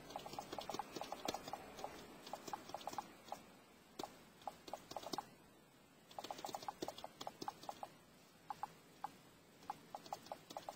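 Typing on a Microsoft Surface RT's detachable keyboard cover: faint, quick runs of light key taps, broken by short pauses.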